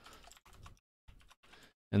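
Faint typing on a computer keyboard: a few short runs of key clicks separated by brief pauses.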